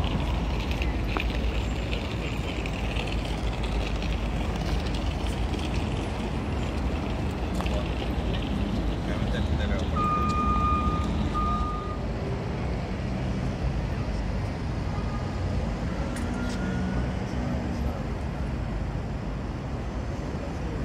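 Busy city street: a steady rumble of traffic and buses with passers-by talking. About ten seconds in, a high electronic beep sounds twice, a long one then a shorter one.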